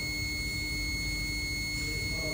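A steady low hum with a thin, steady high-pitched whine over it, and no distinct events.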